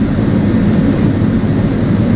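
Jet airliner cabin noise while taxiing: a steady low rumble from the engines and airframe, heard from inside the cabin.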